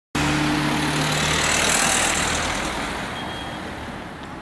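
A car passing close by: engine hum and tyre noise, loudest in the first two seconds and then fading away as it moves off.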